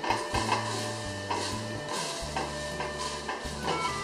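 Wild bayberries tipped from a bamboo basket into a pot of boiling water: scattered soft splashes and light taps of the basket over the pot, with background music under them.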